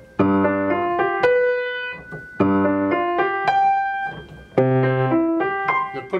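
Acoustic grand piano playing a slow, simple beginner passage. Three times, about two seconds apart, a low bass note is struck together with treble notes, and single melody notes ring on above it.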